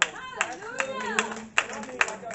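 Hands clapping in a steady rhythm, about two and a half claps a second, over a person's voice.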